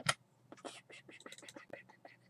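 Computer keyboard and mouse clicking in a quick, irregular run of taps.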